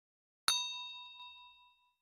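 Bell-like notification ding sound effect: a single bright chime about half a second in, ringing and fading away over about a second.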